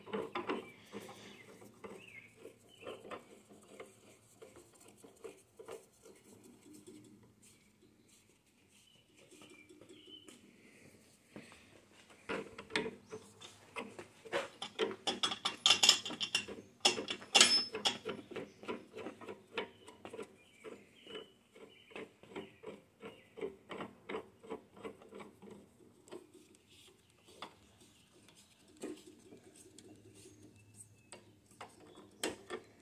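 Feed handles being screwed by hand into the feed hub of a Central Machinery floor drill press: a long run of small clicks and rubbing from the threads and hub, fastest and loudest in the middle.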